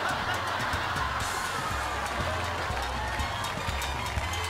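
Upbeat dance-band music with horns over a bass line that steps from note to note.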